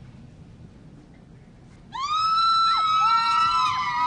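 Low quiet background, then about halfway through several high-pitched screams start at once and hold together, their pitches bending and overlapping.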